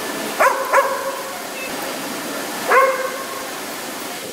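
A dog barking three times: two quick barks close together near the start, then one more about two seconds later, over a steady background hiss.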